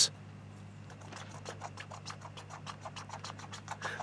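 A hand scraper scratching over the outer casing of a pre-insulated pipe joint, cleaning off set foam residue. Quick, faint strokes come several a second, starting about a second in, over a low steady hum.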